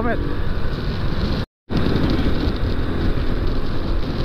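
Motorcycle being ridden at road speed: the engine runs steadily under wind noise on the microphone. The sound cuts out completely for a split second about a second and a half in.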